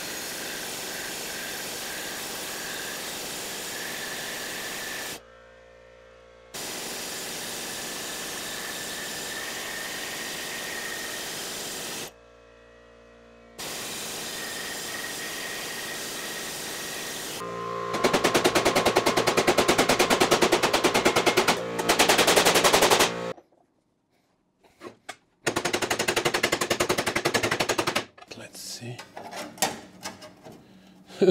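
Planishing hammer rapidly pounding a strip of sheet steel over its highest-crown die, pre-stretching the metal. It runs in long bursts with short pauses; in the last third it gets louder with a fast, even hammering rattle, and it stops a little before the end.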